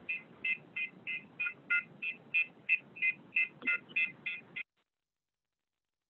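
Temperature-screening software's elevated-temperature alarm beeping through a computer's speakers: about fifteen short, high beeps, roughly three a second. The alarm is set off by a high reading from a hot cup of tea held near the face. The beeping cuts off abruptly a little over four and a half seconds in.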